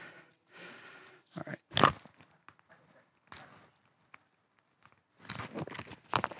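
Half-face respirator being handled and pulled on: scattered rustles and clicks of its rubber straps and plastic cartridges, with a denser burst of handling noise near the end as it goes over the face.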